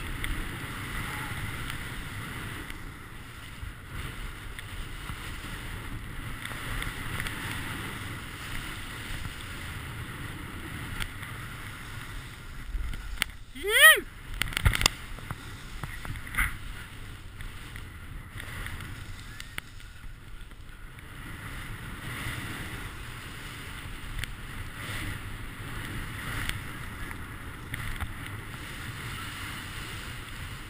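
Steady rushing hiss of a rider sliding fast down a snowy slope, with wind on a helmet-mounted camera's microphone. About halfway through, a brief yell rises and falls in pitch; it is the loudest sound.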